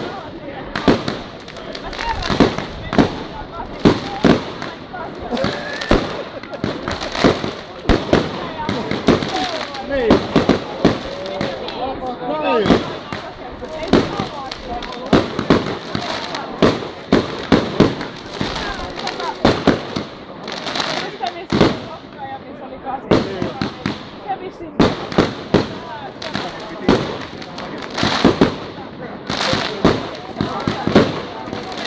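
Fireworks display: aerial shells bursting in a fast, irregular string of sharp bangs, often several a second, throughout.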